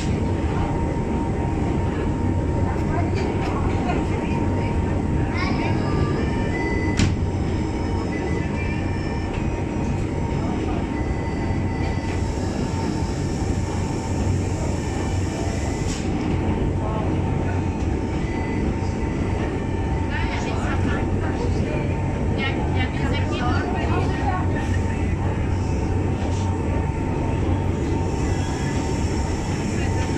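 Steady running noise of the Monte Generoso electric rack railway car heard from inside the passenger cabin: a continuous low rumble with a constant hum and a steady whine, and a single sharp click about seven seconds in.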